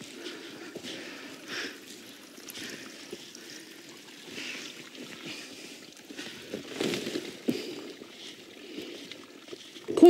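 Faint forest sounds: a small brook trickling, with footsteps and rustling through ferns and undergrowth, and a louder rustle about seven seconds in.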